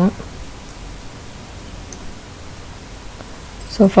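Steady, even hiss of background noise in a small room between spoken phrases, with no distinct clicks or tones; a voice returns briefly near the end.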